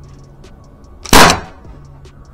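A single sharp shot from a .50-calibre CO2-powered less-lethal launcher on a 25 g CO2 source, about a second in, with a short decaying tail.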